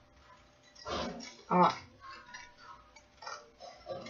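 Scissors cutting through folded paper: short snips with the rustle of the paper sheet, about a second in and again near the end.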